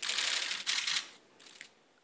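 Dense rapid clicking of several camera shutters going off at once for about the first second, then a shorter, fainter flurry of clicks as it dies away.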